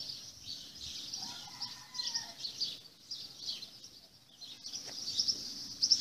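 Small birds chirping continuously, a dense high twittering.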